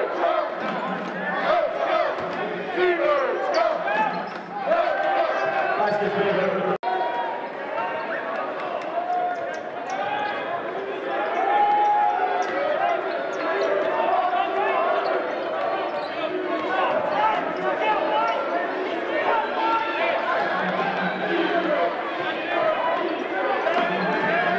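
Live basketball game sound in an indoor arena: the ball bouncing on the hardwood with voices of players and spectators around it. The sound breaks off abruptly about seven seconds in and picks up again.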